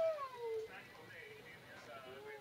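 A dog whining: one drawn-out whine falling in pitch in the first half-second, then fainter whimpering.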